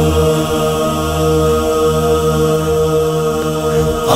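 A steady, held drone of several sustained tones, the hummed vocal backing that opens a noha, unchanging in pitch.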